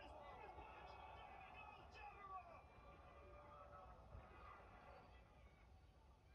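Faint, indistinct voices talking over one another, with a low steady hum underneath.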